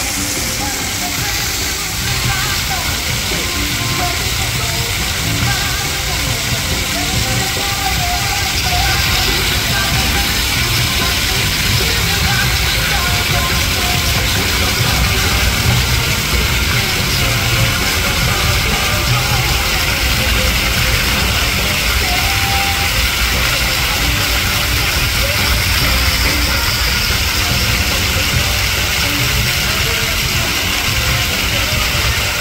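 Water pouring and splashing steadily from a splash-pad mushroom fountain, with music and voices in the background.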